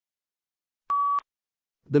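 A single short electronic beep, one steady pitch lasting about a third of a second, about a second in. It is the cue tone between passages, like the PTE exam's beep that signals the start of recording.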